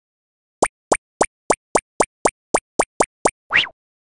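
Cartoon-style sound effects of an animated logo: a quick run of eleven short plopping pops, each a fast upward chirp, about three or four a second. A slightly longer upward swoop closes the run near the end.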